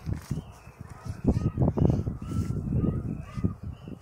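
Feet stepping and scuffing over rock and grass on a steep path, with irregular low thumps that are loudest in the middle. Short bird calls sound now and then in the background.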